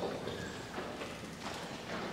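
Footsteps and four or five irregular knocks about half a second apart, with a few short squeaks, as the priest walks to his chair and sits down.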